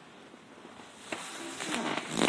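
A pause in a small gym: low room noise, with a faint click about a second in and soft rustling that rises toward the end, as from a phone being handled.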